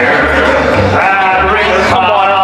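A singing waiter singing live into a handheld microphone through the PA over a loud backing track with a pulsing bass line. A held, wavering note comes near the end.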